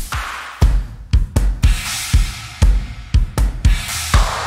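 A drum kit playing a groove: repeated bass-drum hits with snare and cymbal strokes, coming in about half a second in after a brief cymbal wash.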